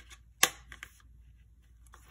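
One sharp click about half a second in, then two softer clicks and faint rustling, as a vellum page clipped into a ring-bound planner is handled and lifted to turn it.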